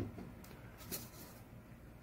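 Quiet room tone with one faint, light tap about a second in, from a plastic measuring cup and lid being handled.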